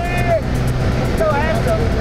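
Small high-wing jump plane's engine droning steadily, heard from inside the cabin in flight, with people's voices over it.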